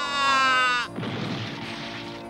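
A cartoon cat's long yowl, sinking slowly in pitch as it falls, cuts off suddenly a little under a second in. A noisy crash follows, as it lands.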